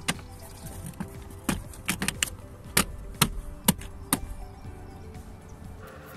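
A plastic dashboard trim panel being pressed back into place by hand, giving a series of sharp clicks and knocks, about eight between about one and a half and four seconds in. Steady background music plays underneath.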